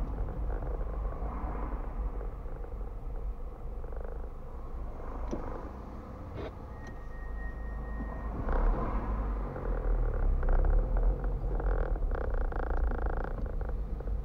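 Low engine and road rumble inside a car's cabin at low speed in traffic, with a few light clicks and a short high tone about seven seconds in.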